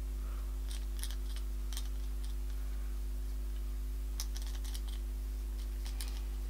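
Steady low electrical hum with faint, scattered soft clicks and ticks in small clusters, from a dense foundation brush being buffed over the skin.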